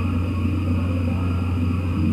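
Steady low hum with no other sound.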